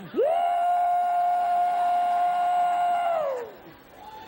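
A man's long, high-pitched 'woo!' whoop into a stage microphone, sweeping up sharply at the start, held on one pitch for about three seconds, then sliding down and fading: an impression of a drunk party-goer's woo.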